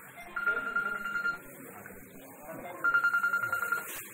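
A high-pitched bell ringing in two bursts of about a second each, with a pause of about a second and a half between, over murmuring voices.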